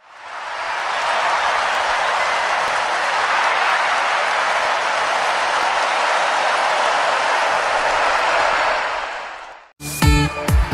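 Crowd applause that swells up over the first second, holds steady as a dense, even clatter, and cuts off suddenly just before the end.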